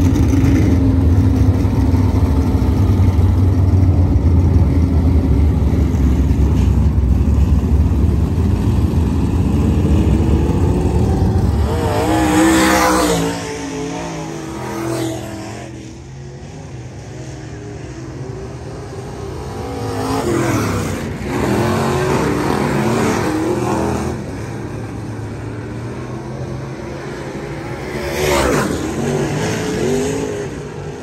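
Dirt-track race car engines running loud and low close by for the first dozen seconds. After that, race cars on hot laps go past one at a time, each pass a rising and falling engine note: about twelve seconds in, again around twenty seconds, and near the end.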